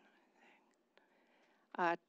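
Near silence with faint room tone and a tiny click about a second in, then a woman's short 'uh' near the end.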